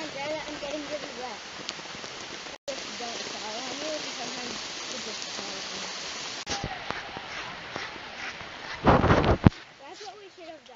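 Steady hiss of falling rain, with faint voices talking under it. A brief loud burst of noise comes near the end.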